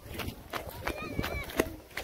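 Distant people calling out, with close footsteps and scuffing on dry dirt. One voice calls out more clearly about a second in.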